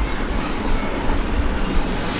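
Steady background noise: an even hiss with a low rumble underneath, and no distinct event.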